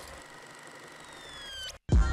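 Intro sound effect for an animated logo at the start of a music video: a steady hiss with faint high tones that glide downward in the second half, cutting off suddenly just before the end. The rap song then starts loudly at the very end.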